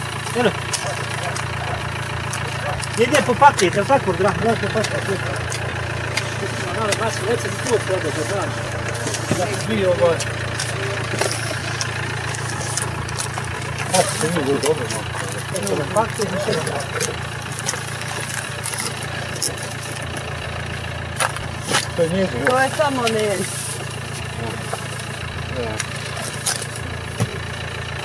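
A car engine idling steadily, a low even hum, with voices talking on and off over it and a few light knocks.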